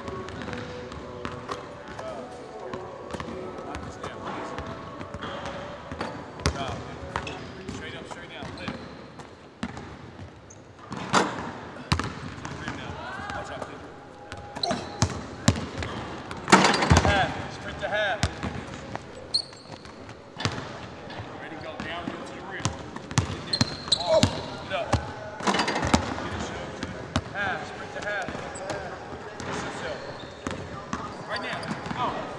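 A basketball bouncing on a hardwood court in a large empty arena, with short squeaks and a few louder hits, the loudest about halfway through.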